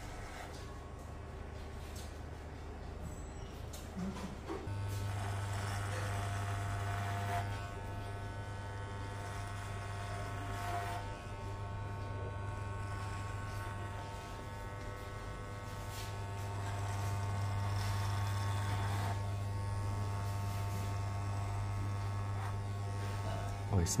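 Corded electric hair clippers buzzing steadily as they trim the sides and neck. The buzz grows louder about five seconds in, with a brighter edge for a few seconds then and again past the middle as the blades work through hair. The clippers are well oiled.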